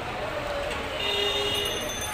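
Steady street noise of a busy market road with rickshaws and auto-rickshaws. About halfway in, a high ringing tone made of several pitches starts and holds.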